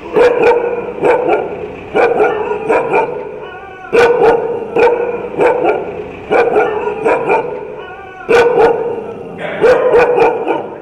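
A dog barking repeatedly, in quick pairs and triples about once a second, each bark echoing briefly.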